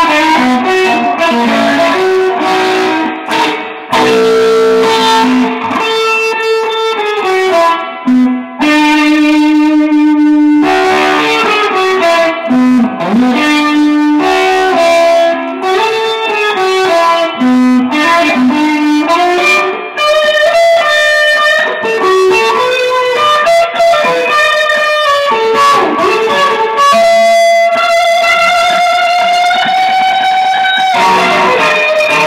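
Single-cutaway electric guitar played as a lead line through an effects unit: long held single notes with string bends and short runs, with a few brief pauses.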